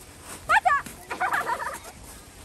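A young child's high voice: two quick rising squeals, then a rapid run of high, choppy giggling.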